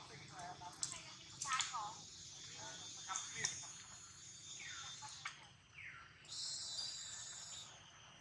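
Faint outdoor ambience of short chirping animal calls and a few falling whistled calls, with occasional clicks, over a steady high buzz that grows louder for about a second and a half near the end.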